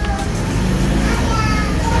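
Low, steady rumble of an engine running nearby, with faint voices over it.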